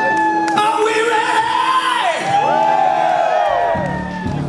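Rock-club concert crowd cheering and whooping between songs, many voices sliding up and down in pitch, over a held note from the band; it dies down near the end.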